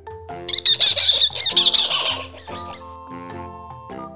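A monkey's high-pitched, rapidly wavering chattering screech, used as a sound effect, lasting about two seconds from half a second in, over a light backing tune.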